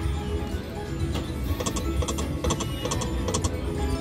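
Konami Safari Winnings video slot machine spinning its reels: a run of quick, irregular clicks as the reels spin and stop, over a steady bed of casino machine music.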